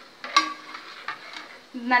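Steel ladle stirring liquid in a steel pot. A sharp metallic clink against the pot comes about a third of a second in, followed by a few lighter taps.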